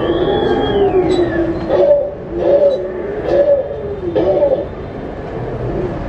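Recorded dinosaur calls played by an animatronic dinosaur exhibit: drawn-out moaning bellows that rise and fall in pitch, one after another, with a high falling cry near the start.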